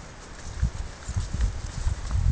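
Hooves of dairy cows thudding on grass turf as the herd trots and frisks about on its first day out to pasture: several irregular dull thumps.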